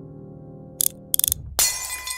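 Soft piano music fading out, then two quick sharp crashes just under a second in and a louder crash with clattering near the end.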